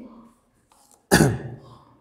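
A man clearing his throat once, a short sudden burst about a second in that fades within half a second.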